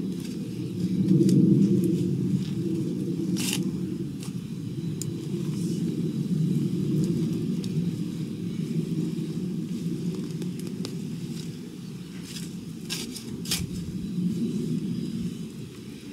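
A spade digging into garden soil and a geranium being pulled up: a few short, sharp scrapes and crackles, one a few seconds in and two close together near the end. Under them runs a steady low rumble.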